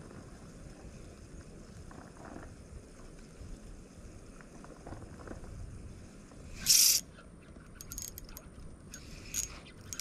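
Ultralight spinning reel being cranked as a lure is retrieved, a faint mechanical turning under steady background noise. A short loud hiss-like rustle comes about two-thirds of the way through, and a few small clicks come near the end.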